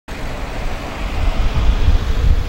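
Cars driving slowly past on an asphalt highway: a steady low rumble of engines and tyres, growing a little louder toward the end.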